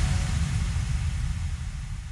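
A low rumbling noise with a thin hiss above it, with no tune or beat, fading out steadily.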